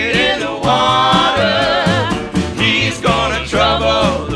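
Country-style band playing a gospel spiritual: low bass notes change about every half second under a wavering lead melody line with vibrato.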